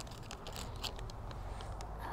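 A handful of short scuffs and rustles over a low steady rumble: shoes scraping on tree bark and leaves brushing as someone clambers along a leaning trunk.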